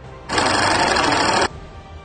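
An edited-in transition sound effect: a loud burst of dense, rattling noise a little over a second long that starts and stops abruptly, over faint background music.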